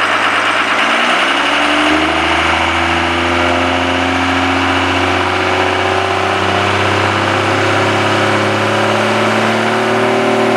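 Ford Super Duty pickup's turbo-diesel engine running and revving up for a burnout, its pitch rising slowly and steadily from about a second in.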